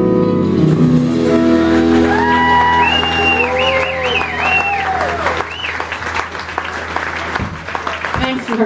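A band's closing chord on acoustic and electric guitars rings out and fades, then the audience claps and cheers with high whoops, the applause thinning out near the end.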